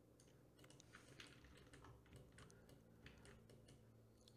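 Near silence, with faint, scattered computer keyboard clicks over a faint steady low hum.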